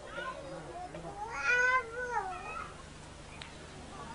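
A single high, wavering cry about a second and a half in, rising and then falling in pitch, over a low background murmur.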